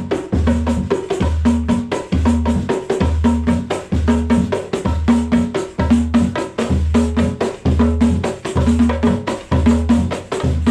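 A one-man samba percussion kit playing a steady samba groove. A pancake surdo, struck by a double bass drum pedal, gives a low beat about one and a half times a second. Over it run rapid stick strokes on the tamborim and pandeiro.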